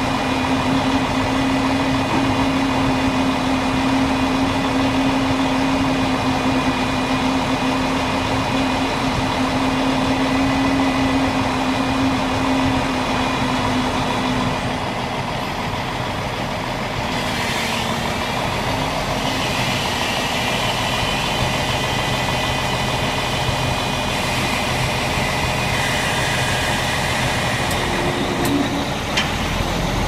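Heavy truck engine running steadily with a strong steady hum; about halfway through the hum fades and the engine note shifts, with a few short knocks near the end.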